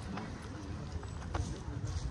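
Footsteps on a paved stone walkway, a few sharp steps over a low steady rumble, with faint voices of passers-by.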